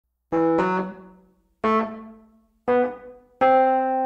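Music: four keyboard chords, each struck sharply and left to die away, the fourth held longer.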